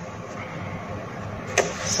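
A steady low mechanical hum in the room, with a short click about one and a half seconds in.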